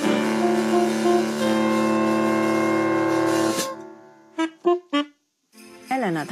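A small jazz band of saxophone, keytar and drums finishing a tune on a long held final chord, which cuts off about three and a half seconds in. A few short sounds follow before a moment of silence.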